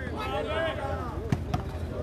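Men's voices calling out, then two sharp smacks about a second and a half in: a volleyball being struck by hand during a rally.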